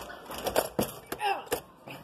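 A few sharp knocks and bumps in quick succession, with brief voice sounds between them.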